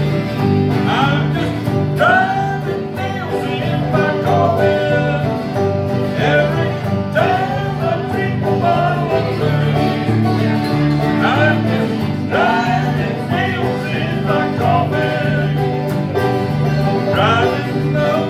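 Live bluegrass band playing a country song on acoustic guitars, five-string banjo and mandolin through a small PA, with busy picked string notes over a steady bass beat.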